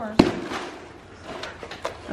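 A single sharp clack of flexible plastic feed tubs knocking together as they are handled, followed by faint rustling while a feed tub is set down on the arena sand.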